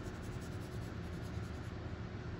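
Felt tip of a Crayola marker rubbing across paper as it colours in, a steady scratchy sound.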